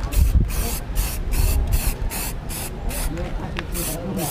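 Aerosol spray-paint can sprayed in short hissing bursts, about three a second, putting a first coat of black paint on plastic scooter fairings.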